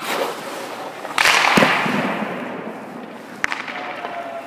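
Hockey goalie's skates scraping the ice as he pushes off and slides across the crease, the loudest scrape about a second in and fading away. There is a sharp knock shortly after it and another near the end.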